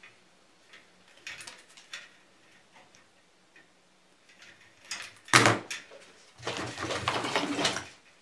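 Hand wire strippers clicking faintly as insulation is stripped off thin fixture wire, then a sharp loud clack about five seconds in and a second and a half of rustling, scraping handling noise.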